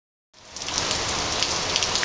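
Heavy rain pouring steadily, a dense hiss flecked with small drop taps, starting about a third of a second in.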